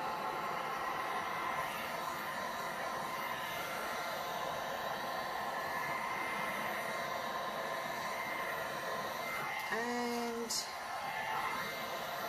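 Handheld electric heat gun running steadily, its fan blowing hot air with a steady whine over liquid epoxy resin to make the piped petals spread and bloom. A brief hummed voice sound comes about ten seconds in.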